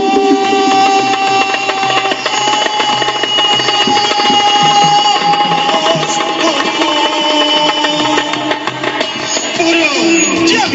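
Live Persian party music through a PA: a man singing long held notes into a microphone over a hand-played frame drum, with quick, steady drum strokes throughout.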